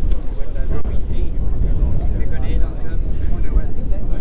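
Wind buffeting the microphone with a steady low rumble, over faint voices of a crowd talking at a distance.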